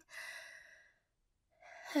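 A woman's breathy sigh, lasting under a second, then a short gap of silence before her voice returns near the end.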